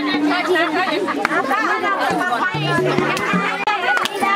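Nepali Teej folk song: women's voices singing with a hand-held frame drum beating, over held low accompaniment notes and crowd chatter.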